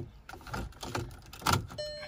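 Volkswagen key fob pushed into the dashboard ignition slot: plastic clicks and the key ring jangling, with a sharp click about one and a half seconds in as the fob seats. A steady electronic tone starts just before the end.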